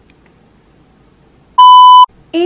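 Faint room tone, then about one and a half seconds in a single loud, steady electronic beep tone begins, like a censor bleep, and is still going at the end.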